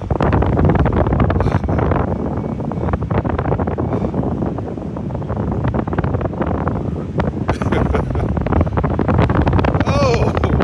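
Wind buffeting the microphone of a camera fixed to a SlingShot ride capsule as it swings high in the air: a loud, steady rush broken by many small pops.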